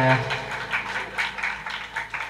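A band's final chord rings on and stops just after the start, followed by scattered hand clapping from a small audience in a small room.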